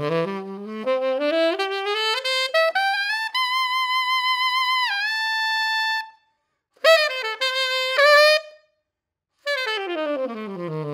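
Tenor saxophone (Selmer Mark VI with a Theo Wanne Durga 3 metal mouthpiece) played solo: a rising run that climbs into a long high note, which bends down near its end. After a short pause comes a brief loud phrase of a couple of notes, then another pause, and a falling run begins near the end.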